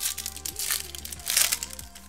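Foil trading-card pack wrapper crinkling as it is pulled open by hand, in two bursts, the louder one about one and a half seconds in.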